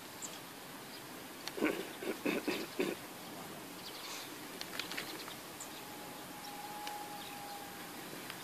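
Quiet open-air background with a short run of about four calls roughly a second and a half in, then scattered faint clicks and a thin steady tone near the end.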